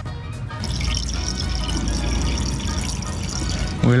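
Distilled water poured from a plastic jug into a van's coolant reservoir, a steady liquid pour lasting about three seconds under background music, topping up coolant that boiled out of the tank.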